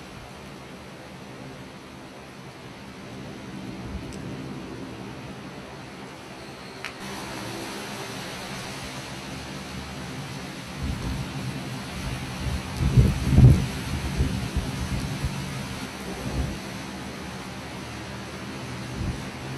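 Torrential rain hissing steadily, growing louder about seven seconds in. Partway through, a deep rumble rises and falls several times and is loudest a little after the middle.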